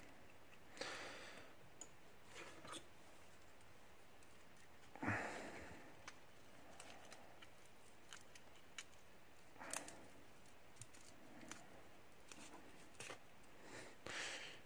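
Painter's tape being peeled and unwrapped from a key: faint scattered crinkling and rustling with a few light clicks, and one louder rustle about five seconds in.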